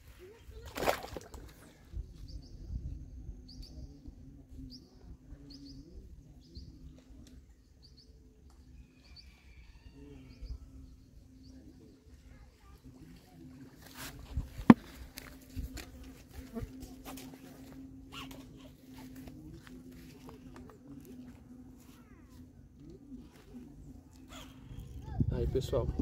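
A fish being released into pond water, with a splash about a second in, followed by a steady low hum, a low rumble and scattered faint ticks and clicks, with one sharp click about halfway through.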